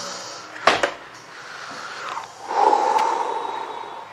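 A sharp knock about a second in, then rustling and breathy exhaling as a heavy RC monster truck is lifted out of its cardboard box and set down.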